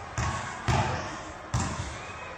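Three dull knocks, each with a short ring, as a man's hands and feet strike the steel roof truss he is climbing along. The knocks come at uneven intervals.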